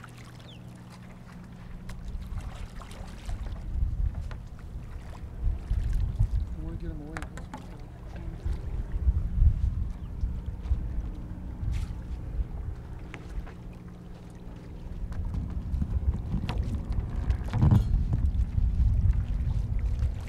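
Wind buffeting an outdoor microphone: a low rumble that swells and drops in gusts, over a faint steady low hum.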